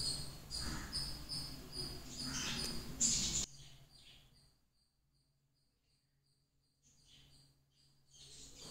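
Steady high chirping in the background, about three short chirps a second, with a few soft rustles from biscuit dough being pricked. About halfway through, everything but the faint chirping drops away to near silence.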